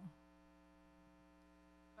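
Near silence: a faint steady electrical hum in the sound system during a pause in speech.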